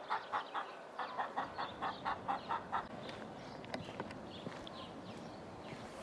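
An animal calling in a quick, even run of short notes, about four or five a second, for the first three seconds. After that there is only faint outdoor background with a few light clicks.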